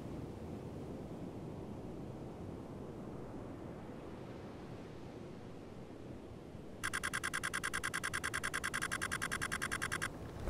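Faint wind and shore ambience, then about seven seconds in a camera shutter starts firing a rapid, even burst of clicks that runs for about three seconds.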